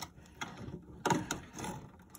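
The plastic main power connector being pressed down into its motherboard socket by hand, with the cables rubbing. There are a few short plastic clicks about a second in.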